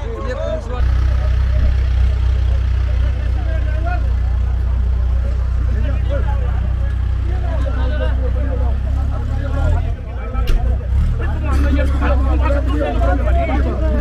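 A loud, steady low rumble sets in abruptly about a second in and dips briefly near ten seconds, under the voices of a crowd of men talking.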